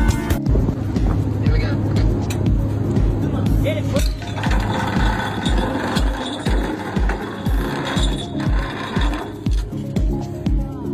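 Background music with a steady low beat, a little under three beats a second, laid over a rushing noise that changes character about four seconds in.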